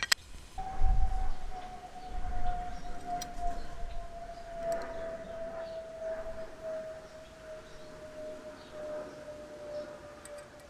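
A single sustained tone that begins about half a second in and slowly falls in pitch throughout. It sits over low thumps from handling in the first few seconds.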